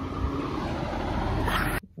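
Street traffic noise with wind buffeting the microphone, a steady rumble that cuts off suddenly near the end.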